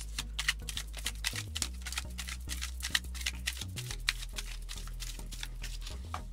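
Tarot cards (a Lo Scarabeo Egyptian Tarot deck) being shuffled by hand: a rapid, uneven run of light card clicks and flicks. Underneath runs background music of low held notes that shift a couple of times.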